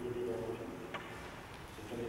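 Dove cooing, a low pitched call that fades out partway through, with a faint click about a second in.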